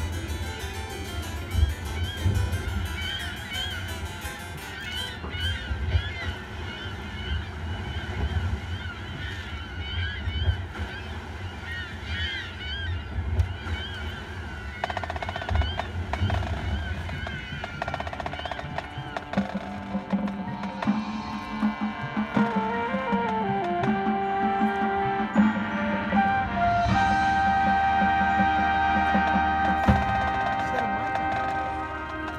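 High school marching band playing its field show. Lighter shifting melodic figures come first; from about 19 seconds wind instruments hold long notes that climb into a louder sustained chord near the end.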